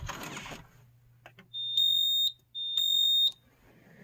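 Fire alarm control panel's built-in piezo sounder giving two high-pitched beeps of under a second each, starting about a second and a half in, just after a few faint key clicks. The panel is running on battery after being unplugged, with a battery trouble being acknowledged.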